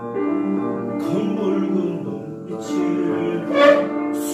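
Operatic tenor singing with grand piano accompaniment. The voice comes in about a second in and swells to its loudest on a held note near the end.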